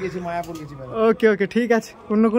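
Domestic pigeon cooing: one low, slowly falling coo in the first second.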